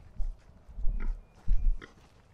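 A boar grunting as it grazes and roots in the grass: three short low grunts, the loudest near the end.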